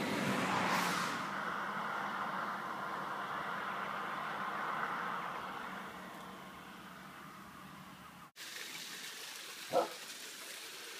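A car driving past on a sealed road, tyre and engine noise loudest about a second in, then slowly fading away. The sound cuts off abruptly about eight seconds in.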